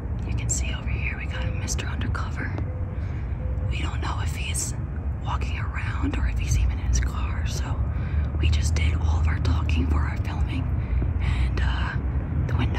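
Hushed whispering voices, over a steady low rumble.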